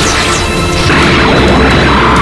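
Anime battle sound effects: an energy attack crashing, swelling into a louder rush of noise about a second in, over background music.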